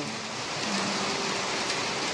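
Steady typhoon rain falling, an even hiss.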